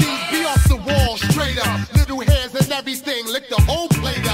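Boom-bap hip hop track: a rapper delivering quick lines over a beat of heavy kick drums and snappy hi-hats.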